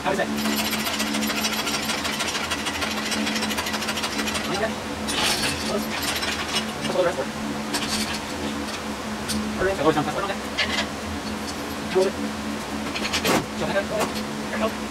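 Steel shop engine hoist with an engine hanging from it being rolled across a concrete garage floor: its casters rattle with rapid fine ticks, then the hoist gives separate metal knocks and clanks as it is stopped and worked into place.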